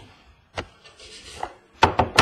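A trading-card box handled on a wooden tabletop: a few light knocks and a brief scrape as it is pushed along, then a louder knock near the end.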